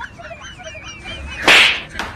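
A kick landing with a comic hit sound effect: one sudden loud crack about one and a half seconds in, fading over about half a second. Before it a high wavering chirp runs on.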